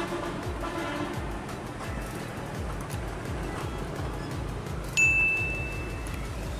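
Soft background music with a low repeating beat. About five seconds in comes a single clear, high chime that rings on and fades.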